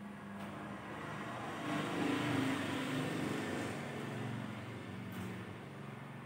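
A road vehicle passing: its noise swells to a peak a little after two seconds in, then slowly fades.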